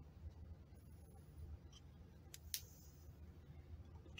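Near silence: room tone with a low hum and two faint clicks about two and a half seconds in.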